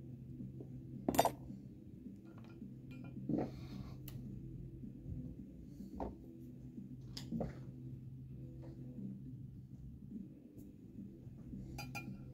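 Light metallic clinks and a short scrape as a small ultrasonic probe is moved and set down on a steel welded test plate. The loudest clink comes about a second in, with a few more later, all over a steady low hum.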